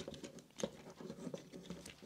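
Faint scattered clicks and taps of small plastic parts as a Transformers G1 Red Alert toy is handled, its arms being straightened out into robot mode.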